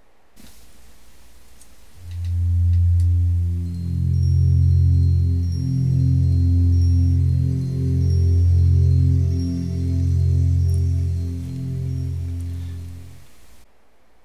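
Ubuntu 5.04 desktop startup sound: a pleasant, slow run of held low notes that swell and fade, changing about every two seconds, with faint high chiming tones above. It starts about two seconds in and dies away about a second before the end.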